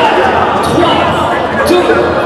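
Voices talking in a large reverberant space, with a couple of dull thuds about a second apart.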